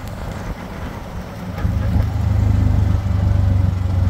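Engine of a motor tricycle heard from inside its sidecar, running steadily, getting louder about two seconds in and staying loud.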